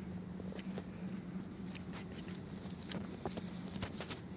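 Light, irregular clicks and taps from someone walking and handling a phone, over a steady low hum.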